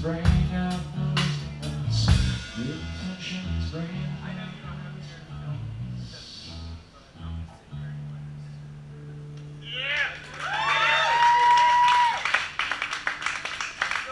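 A live punk band playing electric bass, electric guitar and drum kit. There are hard drum hits together with the bass at first, then scattered bass and guitar notes ringing out. A held low bass note follows, and from about ten seconds in a high, wavering, drawn-out tone comes in.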